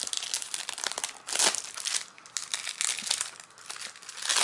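Clear plastic shrink-wrap crinkling as it is peeled and worked off a CD jewel case. It comes as a run of quick crackles, loudest about a second and a half in and thinning out near the end.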